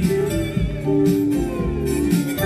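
Instrumental passage on an acoustic guitar played flat across the lap: plucked notes ring and sustain, changing pitch every half second or so.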